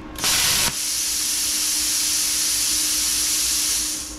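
Bestarc BTC500DP plasma cutter torch triggered in open air. A harsh burst of about half a second as the pilot arc fires, then a steady hiss of compressed air through the torch. The pilot arc shuts off because the torch is not touching grounded metal, so no cutting circuit is made.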